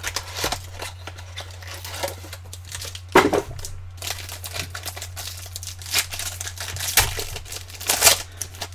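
Foil card-pack wrappers crinkling and tearing as packs are opened and the cards handled, in irregular rustles, the loudest a little after three seconds in. A steady low hum runs underneath.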